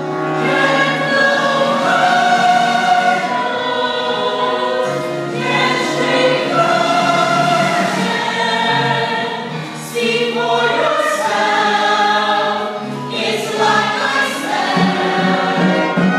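A large stage cast singing together as a chorus in a musical-theatre ensemble number, with sustained chords sung in several phrases and brief breaks between them.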